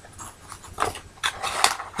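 Packaging being handled as items come out of a camera box: a few short, sharp clicks and rustles, the last couple near the end.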